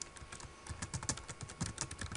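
Computer keyboard being typed on: a quick, irregular run of light key clicks as a password is entered.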